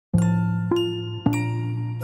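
Intro jingle music for an animated title: three struck, ringing notes about half a second apart over a held low note.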